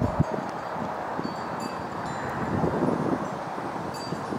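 Outdoor wind rustling and buffeting the microphone, with scattered soft crackles from leaves. A few faint, short high notes sound about a second or two in.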